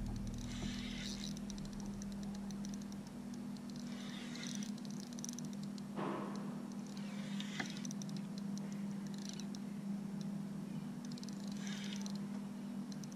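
Spinning reel being cranked in spells every few seconds, a fine rapid ticking, as a fish is fought from the kayak, over a steady low hum. A single knock about halfway through.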